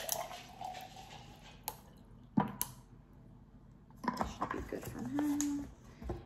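Coffee pouring from a plastic bottle into a glass, its pitch rising as the glass fills, then a few light clicks and one sharp knock about two and a half seconds in as the bottle is handled and set down.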